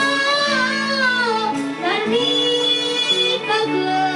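A boy singing a Nepali Christian song through a microphone and PA, his melody gliding between held notes over sustained electronic keyboard chords.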